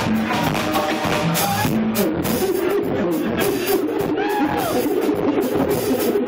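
A live band plays an instrumental piece on drums, vibraphone, keyboards and saxophone. A busy, steady drum beat runs under sustained pitched lines.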